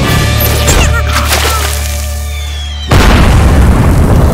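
A cartoon explosion sound effect: a big, sudden boom about three seconds in, over background music that swells down to it.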